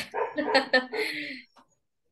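People laughing: several short, breathy bursts of laughter that die away after about a second and a half.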